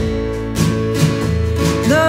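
Folk band playing with acoustic guitar strumming over accordion and drums, the beat steady. A woman's singing comes back in near the end.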